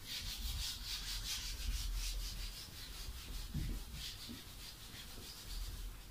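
Whiteboard being wiped clean by hand: quick back-and-forth rubbing strokes across the board's surface, easing off after about four seconds.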